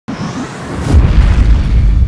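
Cinematic logo-sting sound effect: a swell of noise building to a deep boom about a second in, followed by a sustained low rumble.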